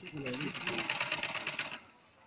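Butterfly sewing machine stitching, a rapid even rattle of needle strokes that stops shortly before the end.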